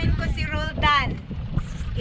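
Speech with wind buffeting the microphone, a steady low rumble under the voice.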